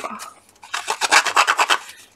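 Handheld paper distresser scraping along the edge of a square of watercolour card, a quick run of short rasping strokes that roughen the edge, starting about half a second in.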